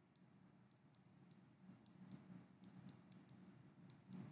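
Faint, irregular high clicks, about a dozen, from a stylus tapping and moving across a writing tablet as handwriting is drawn, over near-silent room tone.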